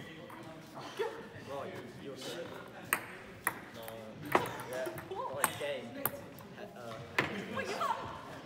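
Table tennis ball in a rally, hit back and forth between bats and bouncing on the table: about seven sharp clicks at uneven intervals.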